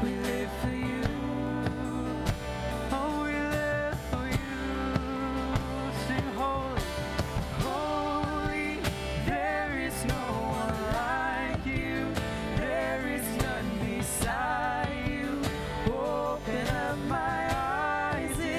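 Live worship band playing a song: a woman sings the melody with vibrato over electric guitar, acoustic guitar and drums.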